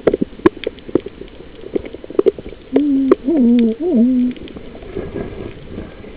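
Underwater recording: scattered sharp clicks and knocks, then about three seconds in a muffled human voice sounding through the water for about a second and a half, holding one pitch and then dipping and rising twice.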